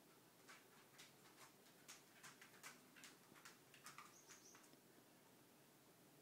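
Near silence: room tone with about a dozen faint, scattered clicks and a brief faint high tone a little after four seconds in.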